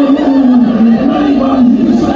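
A church congregation singing a hymn together in unison, many voices holding long notes that step slowly from one pitch to the next.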